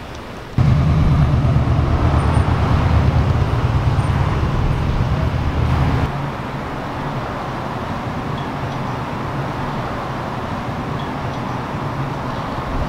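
Road traffic noise with a heavy low engine rumble that starts suddenly about half a second in and is loud for several seconds. About six seconds in it drops to a quieter, steady traffic hum.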